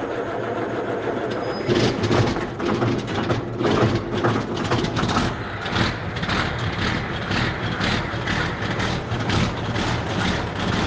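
Heavy engine running with a steady low hum, joined from about two seconds in by uneven, louder pulses that go on to the end.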